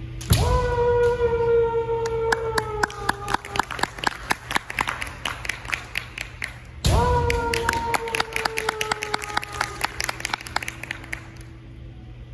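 Two long kiai shouts from kendo fencers, one near the start and one about seven seconds in, each held for about three seconds and sliding slightly down in pitch. Under them runs a rapid clatter of bamboo shinai striking and knocking together, which goes on for about a second after the second shout ends.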